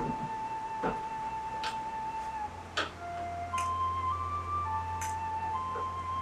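Background film score: a slow melody of long held notes over sparse sharp percussive strikes, with a low drone coming in about halfway through.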